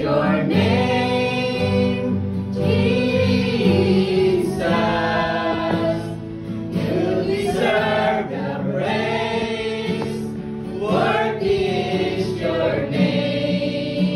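A small mixed group of men and women singing a slow gospel praise song together, with acoustic guitar and keyboard accompaniment.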